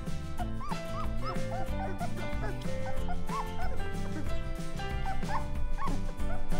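Three-week-old Weimaraner puppies whimpering and yipping, many short high squeaks that rise and fall, over background music with a steady beat.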